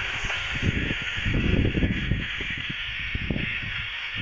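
FM static hissing from the small speaker of a Ritmix RPR-7020 portable receiver tuned to 93.50 MHz, a weak sporadic-E signal buried in the noise with no clear programme coming through. Irregular low rumbling gusts, strongest about a second and a half in, sit under the hiss.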